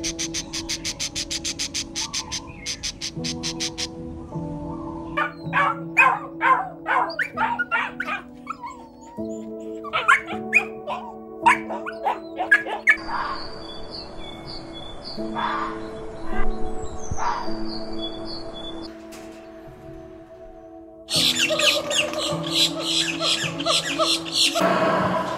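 Gentle piano music with animal sounds laid over it. Rapid high chattering comes first, then a puppy yapping in a run of short barks, then high chirping calls. A louder, denser call comes in near the end.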